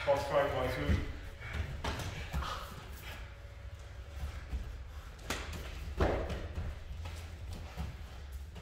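Grappling on foam gym mats: scuffing and thuds of feet and bodies, the two sharpest knocks about five and six seconds in. There is a brief voice in the first second and a low steady hum underneath.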